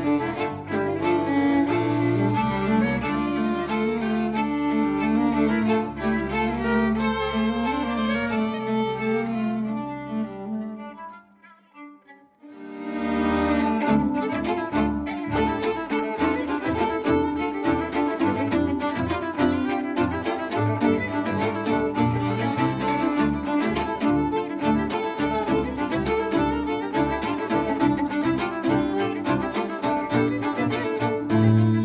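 Polish folk string band of several violins with a low bass part playing live. The playing stops about eleven seconds in and, after a second or two of near quiet, starts again with a more rhythmic beat.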